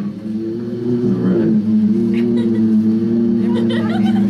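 Steady low electronic drone of several held tones, with a brief bend in pitch about a second in, played through small amplifiers.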